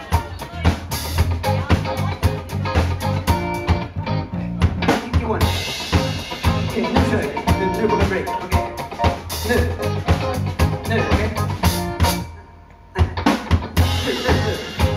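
A live rock band playing: drum kit, electric guitar, bass guitar and keyboard, with a lead singer. Near the end the band stops for about a second, then comes back in together.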